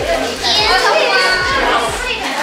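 Many children talking and calling out over one another, a high excited voice rising above the chatter about a quarter of the way in.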